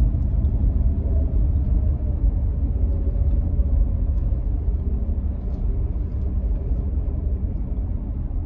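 Steady low rumble of road and engine noise heard inside the cabin of a Tata Punch AMT, its 1.2-litre Revotron three-cylinder petrol engine running while the car cruises, with a faint tone drifting slightly lower in pitch over the first few seconds.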